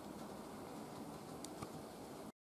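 Quiet room tone: a faint steady hiss with two faint clicks about one and a half seconds in.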